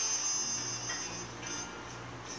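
Quiet instrumental backing music with faint held notes, playing between sung lines.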